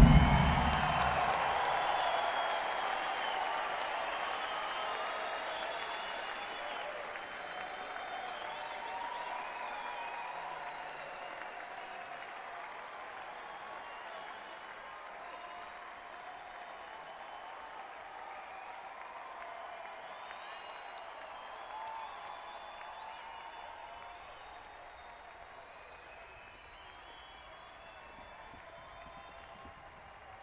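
Concert audience applauding and cheering as the song ends, with scattered shouts and whistles; the applause slowly dies away over the half minute.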